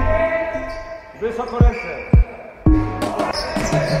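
A basketball bouncing twice on a hardwood gym floor, about half a second apart, as the background music drops out.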